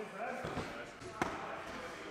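Indistinct voices in a gym, with a dull thud about half a second in and a sharp knock just past the middle.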